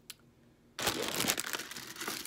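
Crinkling, rustling handling noise that starts about a second in and runs for just over a second.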